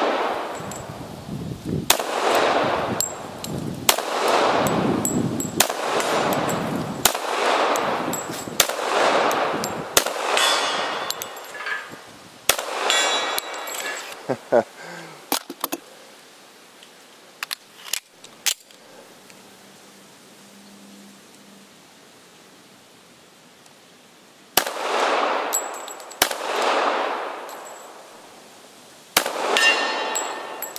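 Colt 1911 .45 ACP pistol firing a string of shots about a second or two apart, each followed by a long echo rolling back through the woods, with hit steel targets ringing. After a pause of several seconds with a few small clicks, two more shots come near the end.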